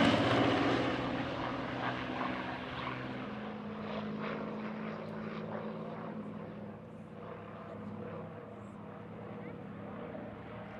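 Republic P-47D Thunderbolt's Pratt & Whitney R-2800 radial engine and propeller fading away after a close pass. The sound drops off over the first few seconds, then settles into a steady, distant drone.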